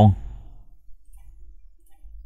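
The last syllable of a synthesized narrator's voice, then a quiet stretch with a faint low hum and a few faint clicks.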